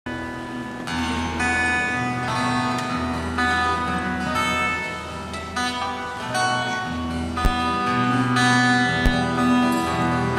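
Acoustic guitars playing a picked instrumental introduction over low sustained notes, with two brief thumps in the second half.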